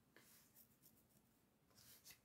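Near silence with a few faint rustles and scratches, one just after the start and another near the end, from a hand moving close to the phone's microphone.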